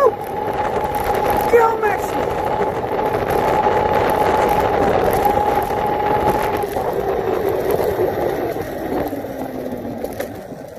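Overvolted Razor E300 electric scooter running at speed: a steady high motor whine over tyre and wind noise. In the last few seconds the pitch drops and the sound fades as the scooter slows.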